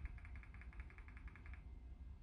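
A fast, even run of faint high ticks, about a dozen a second, that stops about one and a half seconds in, over a steady low hum.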